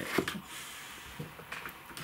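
Quiet room tone with a light click just after the start and a few faint taps later: handling noise.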